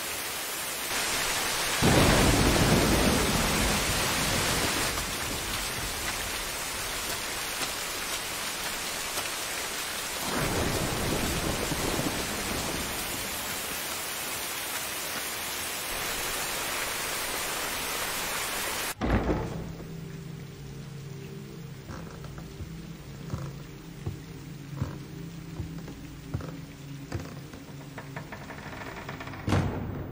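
Steady heavy rain with two rolls of thunder, one about two seconds in and a second about ten seconds in. About two-thirds of the way through, the rain cuts off abruptly and gives way to low sustained musical tones with faint knocks.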